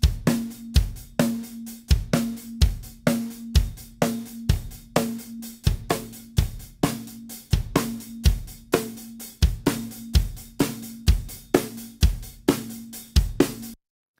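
Multitracked acoustic drum kit playing back a steady beat of kick, snare, hi-hat and cymbals, with a sampled kick drum blended under the recorded kick to reinforce it. The playback stops abruptly just before the end.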